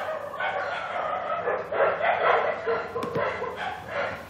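Several calls from a domestic animal.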